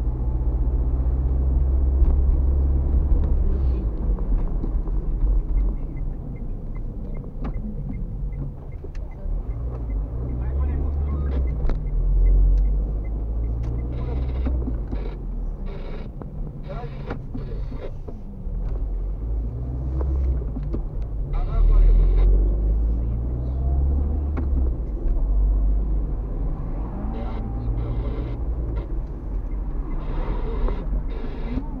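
Car driving on town streets, heard from inside the cabin: a low engine and road rumble that swells and eases with speed, with scattered light knocks.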